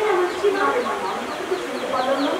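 A performer's high-pitched, wavering voice in stylised stage delivery, picked up by hanging stage microphones.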